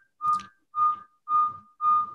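Audio feedback on a video call: a whistle-like tone pulsing about twice a second, four times. It comes from one participant's audio being picked up and looped back by a second device connected to the same meeting (a phone and an iPad both on).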